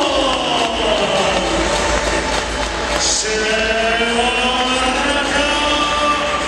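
An amplified voice drawn out in long held notes like a chant: one long phrase sliding down in pitch, then a second long phrase starting about halfway through.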